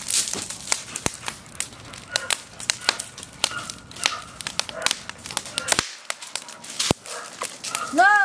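Wood fire crackling in a metal mesh fire pit: irregular sharp pops and snaps, several a second, with a few louder single cracks.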